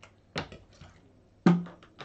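Plastic drinking bottle handled while drinking from it: a sharp click about a third of a second in, a louder click at about a second and a half, then a run of small crackles of the plastic.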